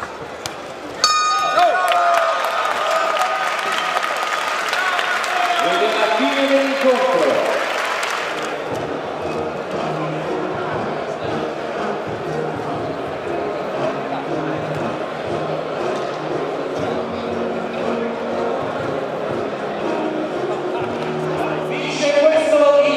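A boxing ring bell rings about a second in, ending the round. Crowd cheering and applause swell over it for several seconds, then give way to background music and crowd chatter.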